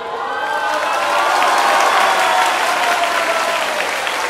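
Audience applauding with cheering voices, swelling to its loudest about halfway through and easing a little near the end.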